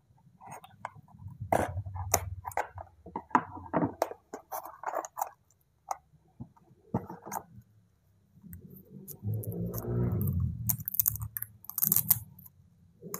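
Close-miked unboxing of a toy doll: scissors snipping and plastic and cardboard packaging clicking and scraping in quick, irregular bursts, then a longer rustle of the doll and its clothes being handled near the end.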